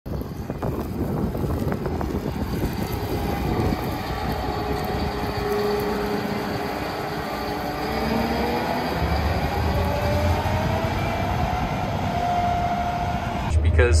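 Gleaner S98 combine harvester running as it drives past, a steady mechanical rumble with a whine that climbs slowly in pitch through the second half.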